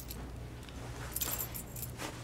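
Quiet room tone with a low steady hum, and a faint light rustle or jingle from about a second in.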